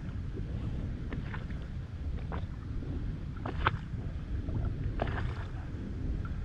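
Wind buffeting the microphone as a steady low rumble, with a few short, light clicks scattered through it.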